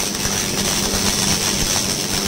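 Handheld 1000 W continuous fiber laser cleaning head firing on rusty steel plate: a steady high hiss with fine crackle as the rust is stripped off. A steady low machine hum runs underneath.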